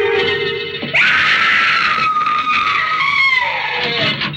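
Sustained music bridge fading out, then about a second in a woman's scream breaks in, held for about three seconds and dropping in pitch near the end: the cry of a young woman discovering her father murdered.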